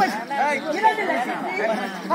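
Voices talking, several at once.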